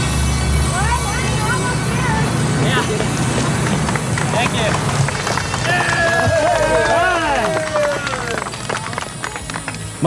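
Several people's voices calling and shouting over steady background music, with the loudest calls coming between about six and eight seconds in.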